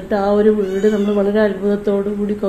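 A woman speaking Malayalam in a level, even voice.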